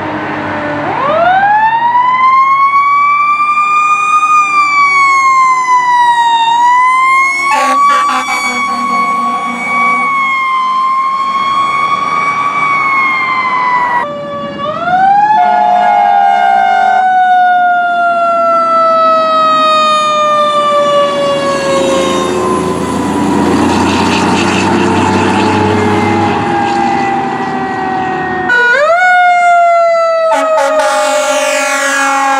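Fire truck sirens. One winds up about a second in and wails up and down. After a cut, another rises and then winds slowly down in pitch over many seconds, with a truck's engine and road noise under it. Near the end a third siren starts with a quick rise.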